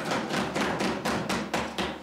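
Legislators thumping their wooden desks in applause: a quick, fairly even run of knocks, about five a second.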